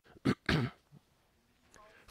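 A man's two short, dry coughs, close to the microphone, within the first second.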